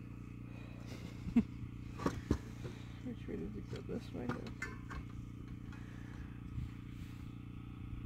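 A few light clicks and knocks of a plastic speed square and hands against the metal base plate and blade of a cordless circular saw while its blade bevel is set back to 90 degrees, over a steady low hum.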